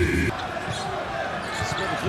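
A basketball being dribbled on a hardwood arena court, a run of short bounces under faint crowd noise. This follows a burst of cheering and music that cuts off abruptly just after the start.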